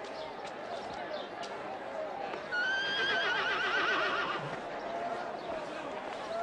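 A horse whinnies once about halfway through: a wavering call lasting about two seconds and the loudest sound, over a background murmur of voices.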